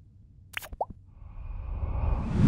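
Motion-graphics sound effects: two short plops about a quarter of a second apart, the first higher-pitched than the second, then a whoosh that swells up toward a screen transition.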